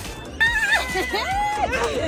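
Young women's excited high-pitched squealing and laughter, the voices gliding up and down, starting about half a second in.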